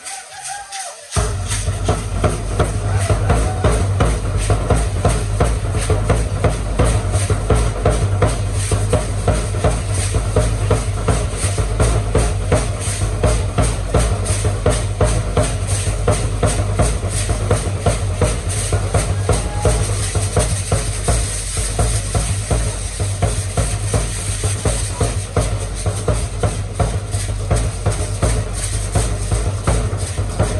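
Danza music of many gourd rattles (sonajas) shaken in a fast, dense rhythm over a steady low drum beat. It kicks in loudly about a second in.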